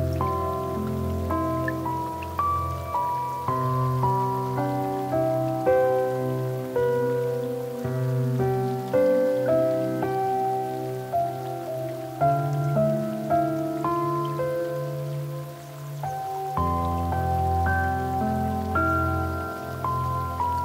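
Slow, gentle solo piano music: unhurried single notes and chords that ring and fade over long-held low bass notes.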